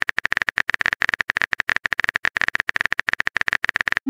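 Keyboard-typing sound effect: a fast, uneven run of sharp clicks, many to the second, marking a chat message being typed.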